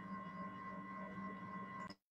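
Faint steady electrical hum with a thin high whine from an open microphone line on an online call, cutting off abruptly just before the end as the audio drops to silence.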